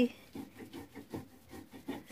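Stone mano (metlapil) rubbing back and forth on a stone metate, grinding lime-cooked maize (nixtamal) into masa: a series of faint, irregular scraping strokes.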